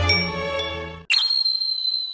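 Background music cuts off about a second in, and a single bright, high-pitched ding sound effect strikes in its place, ringing on and fading away over about two seconds.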